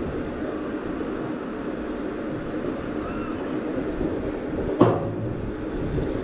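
Machinery of a booster thrill ride running with a steady rumble and hum while the gondola rests at the platform. A single sharp clunk comes near the end.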